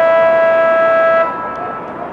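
A horn blows one loud, steady note with a rich buzzy tone, cutting off suddenly a little over a second in.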